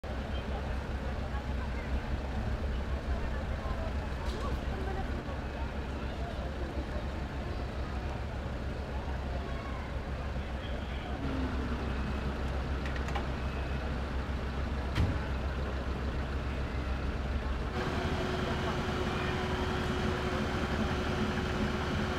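Steady low rumble of idling fire engines, with a single sharp knock about fifteen seconds in and a steady hum joining near the end.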